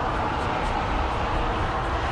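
Steady low rumble and hiss of background noise, with no distinct events.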